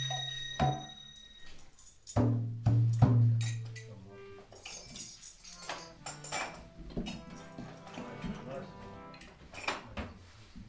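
Devotional kirtan music: a harmonium playing with deep drum strokes and sharp metallic percussion strikes in the first few seconds. After about four seconds it goes on more quietly, harmonium and voices fading as the music dies down.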